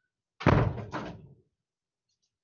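Two heavy thumps about half a second apart, the first the louder, dying away within about a second.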